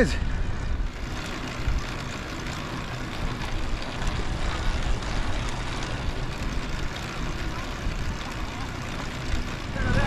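Steady wind rush on the microphone of an electric trike riding along an asphalt road, with rolling road noise underneath.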